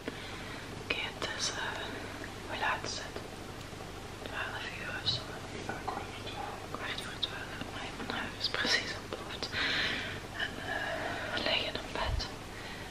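Speech only: a person whispering softly on and off.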